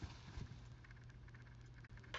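Faint, quick, irregular clicking over a low steady hum: the rattling noise in the room, which is later traced to clocks. There are a couple of soft low knocks in the first half-second.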